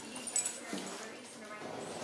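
Two dogs play-fighting on the floor, with small whines and yips and a couple of sharp clicks about a third of a second in.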